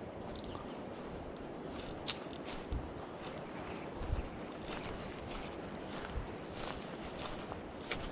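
Steady outdoor noise of wind on the microphone, with a few irregular soft thumps of footsteps on grass.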